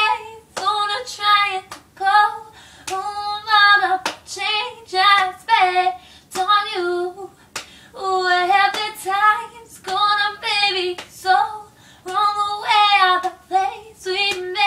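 A young woman singing a pop song unaccompanied, slowed into her own tempo, with sharp hand slaps on her thigh every second or so.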